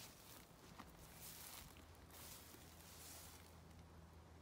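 Near silence: faint outdoor ambience with a few soft, brief rustles.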